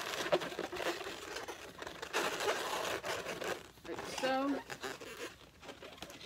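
Latex twisting balloons rubbing against each other as they are handled and pushed into place by hand, in irregular bursts with short pauses, quieter near the end.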